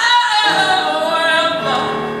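Gospel choir singing: a high note held by the upper voices, easing downward, with lower voices coming in near the end.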